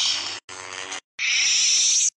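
Lightsaber sound effects in short clips that each stop abruptly: a buzzing hum around the middle, then a louder hissing sweep near the end.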